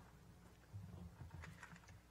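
Near silence with faint soft taps and rustles about a second in, from papers being handled at a lectern.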